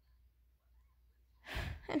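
Near silence for about a second and a half, then a short breathy sigh from a person, running straight into the start of speech.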